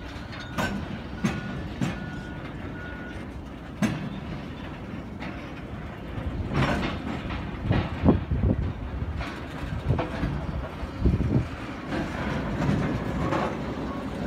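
Slow-rolling train of steel gondola cars: wheels clanking and knocking over rail joints, with a few short, high squeaks in the first few seconds. The knocking grows busier and louder from about halfway through.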